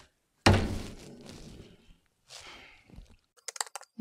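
A single heavy thunk about half a second in that dies away over a second or so, followed by a fainter rustle and then a run of light, quick clicks near the end.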